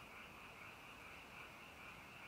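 Faint, steady high-pitched chorus of calling animals, pulsing slightly without a break, over a low background hiss.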